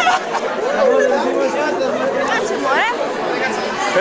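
Chatter of many young voices talking over one another in a crowd of school students, with one voice rising sharply a little before three seconds in.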